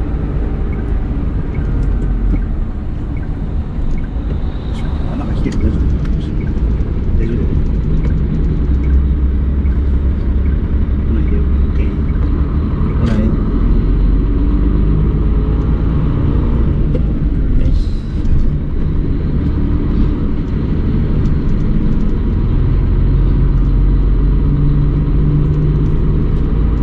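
Hino tractor unit's diesel engine and road noise heard inside the cab while driving, a steady low rumble, hauling a container trailer.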